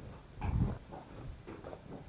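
Footsteps on stone paving in a vaulted passage, with one louder, short low sound about half a second in, then fainter scattered steps.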